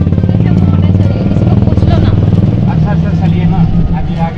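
Steady low rumble of a moving rickshaw ride along a town street, heard from the passenger seat, with faint voices behind it.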